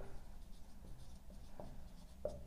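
Dry-erase marker writing on a whiteboard: faint, short strokes as the letters are formed.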